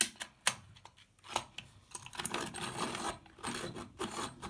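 A few sharp plastic clicks in the first second and a half as a pencil is fitted into a hand-crank pencil sharpener. About halfway in, the crank turns and the blades shave a Prismacolor coloured pencil with a steady, rasping grind.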